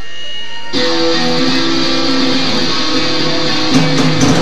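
Amplified electric guitars strumming the opening chords of a live rock song, coming in sharply under a second in after a few faint held notes, with a single drum hit near the end.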